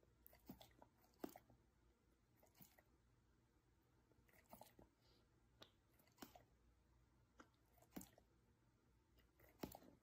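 Near silence, broken by faint, irregular wet clicks and smacks of a tongue and lips, about a dozen of them.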